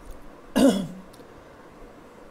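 A man coughing once, briefly, a little over half a second in.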